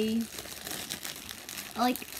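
A clear plastic bag of crisps crinkling in a steady patter of small crackles as it is pinched and folded at the top by hand.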